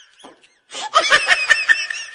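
People laughing. A short lull, then the laughter starts again loudly under a second in.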